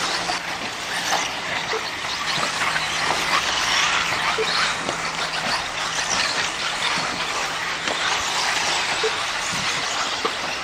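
Radio-controlled 4WD off-road buggies racing on a dirt track: a continuous mix of high motor and drivetrain whines that rise and fall as the cars accelerate and brake, with tyres scrabbling over dirt.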